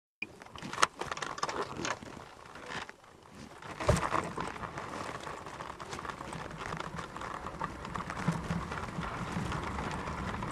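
Bobsleigh sliding on an ice track, heard from on board: a few knocks in the first two seconds and a thump near four seconds, then a steady scraping rush that grows slowly louder as the sled gathers speed.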